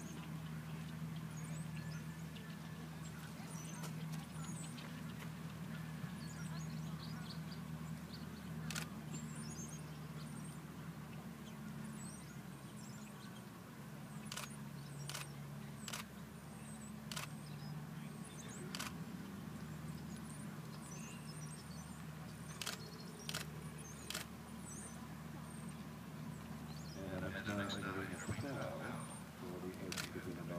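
Open-air ambience with a steady low hum, scattered faint bird chirps, and a series of sharp clicks through the middle.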